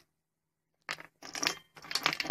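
About a second of dead silence, then a quick run of light clicks and clinks from hands handling small glass 12-volt bulbs and their wires.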